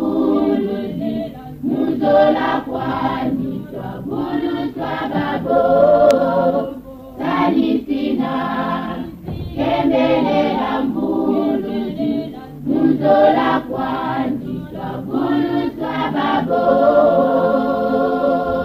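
A choir singing in short phrases, each a second or two long, with brief breaks between them.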